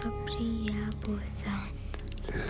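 A boy speaking in a soft whisper over quiet background music with long held notes.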